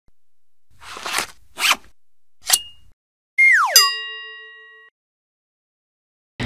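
Three quick fabric-like swishes as a rubber-palmed gardening glove is pulled onto a hand, then a whistle that slides steeply down in pitch and a bright chime that rings out for about a second, a logo jingle.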